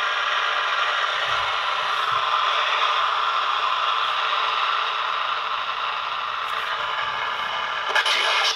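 Six-transistor pocket AM radio playing a steady rush of static through its small speaker, dipping slightly in level about two-thirds of the way through. The antenna signal reaches the radio with no direct connection, through a coil clipped to the antenna leads and coupled to the radio's internal antenna.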